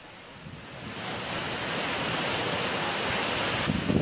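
Heavy rain coming down, a steady hiss that swells in over the first second and holds.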